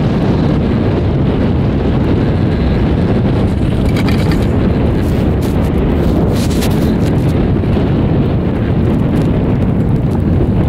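Wind buffeting the microphone of a camera riding an open chairlift: a loud, steady, gusting rumble. A couple of faint clicks come about four and six and a half seconds in.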